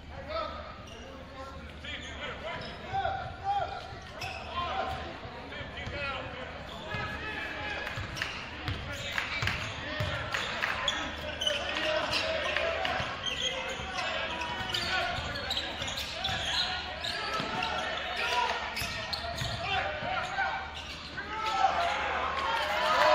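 Game sounds in a gymnasium: a basketball dribbled on the hardwood court, with players and the bench calling out and shouting.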